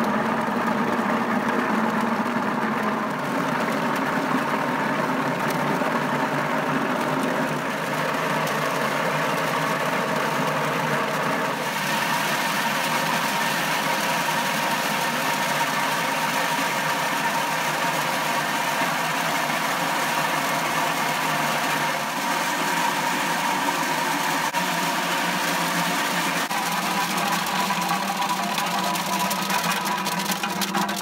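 Kadıoğlu CKS80 walnut huller running: its electric motor spins the perforated grater drum as walnuts tumble and scrape against the rasp under a water spray, stripping their green hulls. The sound is steady, with a hiss that turns brighter about twelve seconds in.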